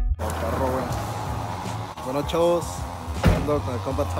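Men's voices talking in the background over music and outdoor noise, with a single sharp thump about three seconds in.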